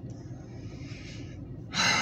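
A man breathing in, then a loud, heavy sigh out near the end.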